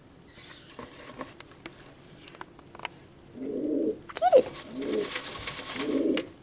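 Domestic pigeon cooing: a few low, throbbing coos starting about halfway through. Behind them comes the rustle of a hand stirring paper tickets in a plastic tub.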